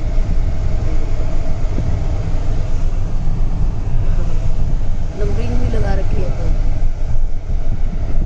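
Vehicle running on the road, heard from inside the cabin: a steady engine and road rumble, with a brief voice a little over halfway through.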